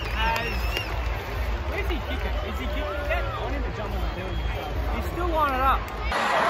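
Stadium crowd hubbub: many voices talking and calling out at once, with no single voice leading, over a steady low rumble.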